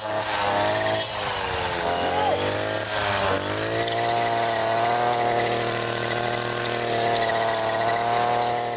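Petrol string trimmer's small two-stroke engine running at high revs while cutting through tall wild cannabis stalks. The engine note sags and recovers twice in the first few seconds as the cutting head bites into the stalks, then holds steady and high.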